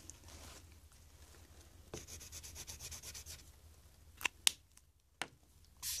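Spectrum Noir marker tip scrubbing quickly back and forth on a craft mat, a faint scratchy run of short strokes, followed by three sharp clicks near the end.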